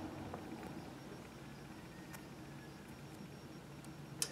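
Quiet room tone with a few faint, small clicks from fingers handling a small plastic toy rifle.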